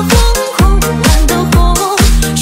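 Progressive house DJ remix of a Chinese pop song: a steady kick-drum beat under held bass and chords, with a wavering melody line above.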